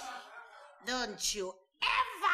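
A person's voice: one short cry whose pitch rises and then falls, about a second in, as studio-audience laughter dies away.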